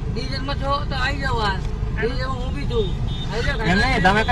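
Men's voices speaking back and forth over a steady low rumble of street traffic.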